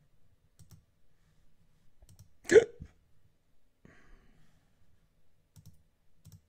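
Scattered faint computer-mouse clicks, and about two and a half seconds in one short, loud vocal noise from the person at the desk, typical of a hiccup.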